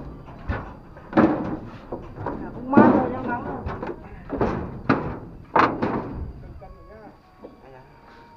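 Indistinct talking in short bursts, with a few sharp knocks and thumps from people climbing aboard a metal boat with a plank deck.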